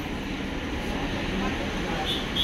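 Steady background din of a busy snack shop: a low, even rumble with indistinct voices of customers around the counter.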